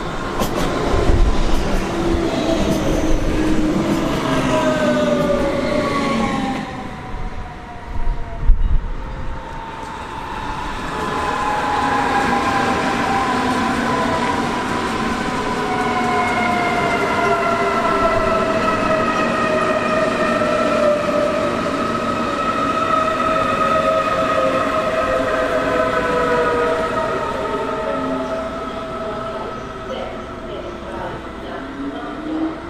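Electric multiple-unit trains (a DB class 425 and Munich S-Bahn class 423 units) with the whine of their electric traction drives sliding down in pitch as they slow, over rail and wheel noise. A few loud low thumps come about eight seconds in.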